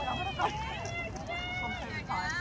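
Several high-pitched young voices shouting and cheering at once, in long drawn-out calls that overlap.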